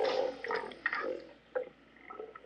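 A man's muttering and wet mouth sounds, lip noises and small clicks, tailing off after about a second and a half.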